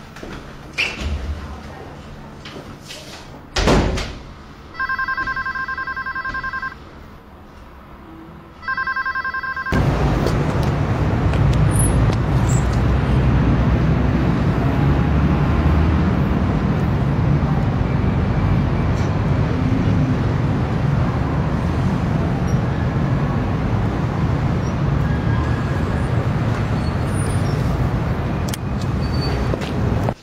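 A door shuts with a thump, then a desk telephone rings twice with an electronic ring, each ring about two seconds long. From about ten seconds in, steady city street traffic noise.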